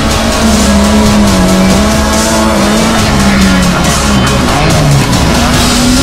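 Lada VFTS rally car engine running hard at high revs, its note wavering and dropping briefly about four and a half seconds in, mixed with a soundtrack music bed.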